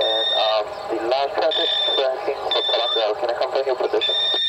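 ADS-B traffic alarm beeping: a repeated high-pitched beep, each about half a second long, sounding roughly once a second. It warns that an aircraft is approaching.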